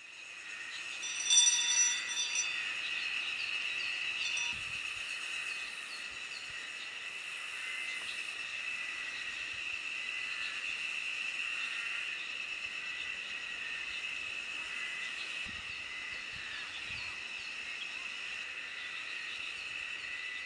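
A small brass hand bell rung a few times near the start, its ringing fading out after a few seconds. Under it, and on through the rest, a steady high insect chorus with scattered bird chirps.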